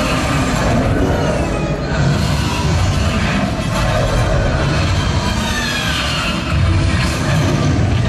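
Loud show soundtrack from a nighttime projection show over the park's loudspeakers: music mixed with sound effects, with heavy low-end surges and a few sliding high tones.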